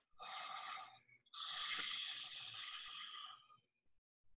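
Ujjayi breath: a man breathing audibly through a narrowed throat, making a hissing rush in the back of the throat. There are two breaths, a short one of under a second, then a longer one of about two seconds that fades out.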